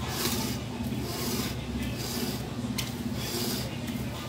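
Irregular rubbing and rustling of hands handling a large glass bowl sealed in plastic cling film as it is turned, with a few brief louder scrapes, over a steady low hum.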